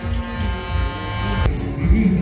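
A steady electric buzz from the bumper car ride, a single unchanging pitch with many overtones, heard over fairground music; it cuts off suddenly about three quarters of the way through.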